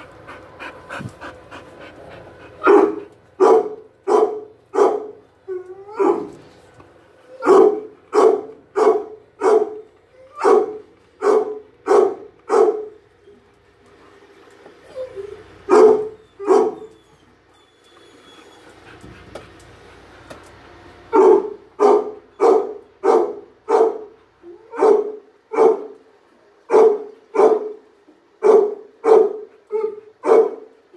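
A dog barking over and over, about two barks a second, in long runs broken by pauses of a few seconds.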